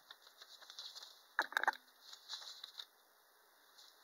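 Paper and plastic packaging rustling and crinkling as a cardboard box is unpacked by hand, with a brief louder burst of crackling about a second and a half in.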